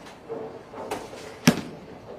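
Bowling alley sounds: a single sharp knock about one and a half seconds in, with a fainter click before it, over a low background hubbub.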